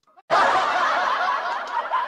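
Laughter, starting after a brief silence about a quarter second in and running on steadily.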